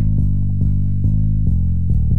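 Instrumental break in a hip-hop beat: a low plucked bass line of short notes, about four a second, with no drums or vocals.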